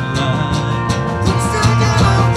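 Live country-rock band playing: electric and acoustic guitars, electric bass and drum kit, with singing.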